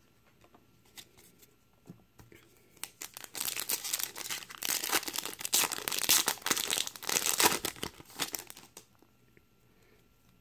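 Foil wrapper of a 2017 Topps Update Series hobby pack crinkling and tearing as it is opened by hand. This starts about three seconds in and stops about nine seconds in.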